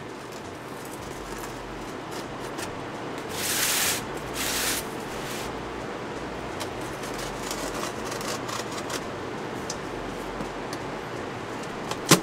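Plastic wrap and tape on a cardboard shipping box being cut with a small knife and pulled at by hand: two short scraping rasps about three and a half and four and a half seconds in, over a steady low hiss.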